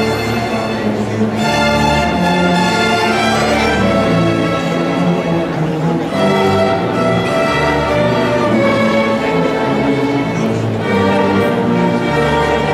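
Student string orchestra of violins and cellos playing, with held bowed notes that change about every second at a steady level.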